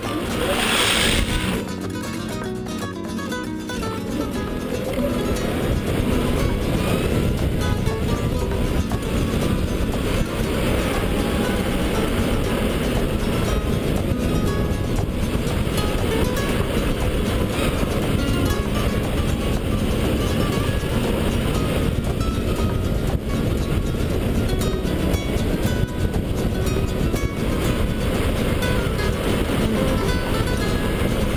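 DeWalt 84V electric go-kart driving at speed on track, heard from the driver's helmet: a steady rush of wind and tyre noise that builds over the first few seconds and then holds, after a short loud rush of noise about a second in. Music plays underneath.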